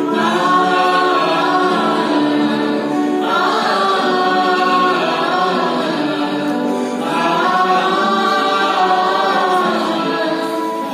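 A mixed group of men and women singing a song together in chorus, accompanied by two acoustic guitars, with new sung phrases starting about three seconds in and again about seven seconds in.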